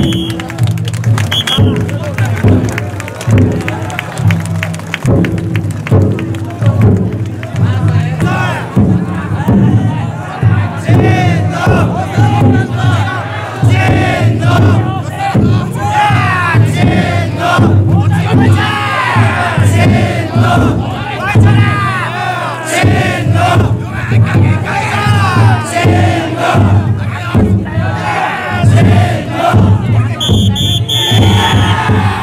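Large crowd of taikodai bearers and onlookers shouting festival calls over one another, loud throughout, with a float's big drum beating a steady rhythm in the first several seconds.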